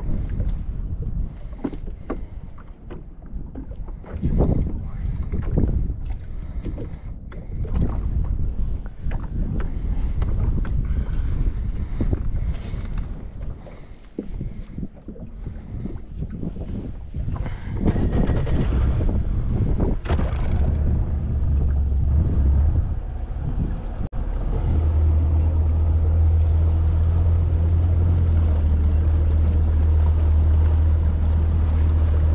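Fishing boat underway with wind buffeting the microphone and scattered knocks; about 24 seconds in, a steady low drone of the outboard motor running takes over and holds.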